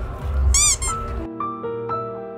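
Noisy outdoor ambience with a brief high squeak, a quick run of rising-and-falling chirps, about half a second in. A little past the middle it cuts to soft background music of held piano notes.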